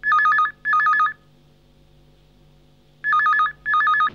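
Telephone ringing with a double ring that warbles rapidly between two pitches: two short rings, a pause of about two seconds, then two more. It is an incoming call.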